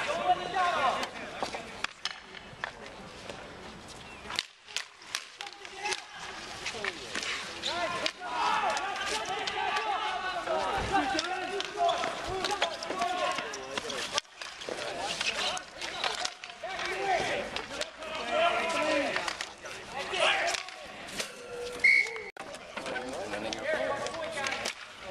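Street hockey play: players calling out and shouting over the sharp clacks of sticks striking the ball and the pavement, with a brief high tone near the end.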